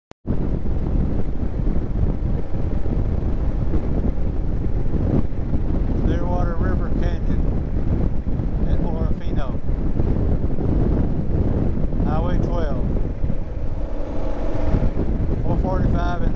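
Wind rushing and buffeting over the microphone of a camera mounted on a moving motorcycle at road speed, with the bike's engine running steadily underneath.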